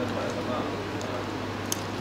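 Pliers gripping and pulling heavy nylon trace line to tighten a knot: a faint click about a second in and a sharper click near the end, over a steady low hum.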